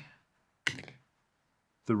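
A single sharp click from the broken 3D-printed resin dovetail pins and timber as they are worked free of a steel machine vice's jaws, about two-thirds of a second in, dying away quickly.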